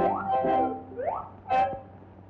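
Cartoon music score breaking into two rising swoops in pitch about a second apart, like glissando sound effects. A short sharp accent follows, then the music drops quieter near the end.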